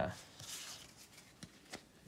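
Trading cards being handled on a table: a soft, faint rustle, then a couple of light ticks near the end.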